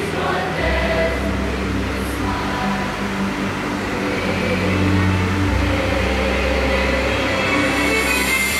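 Large choir of boys' and girls' voices singing long held notes over an instrumental accompaniment, whose bass note changes twice.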